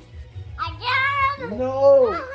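A toddler's high voice singing in a drawn-out, sing-song way, starting about half a second in with long held notes that bend in pitch.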